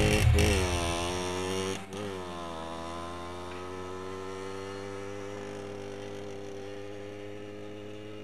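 Motorcycle engine revving and falling back to idle twice, with a click at each rev, then idling steadily.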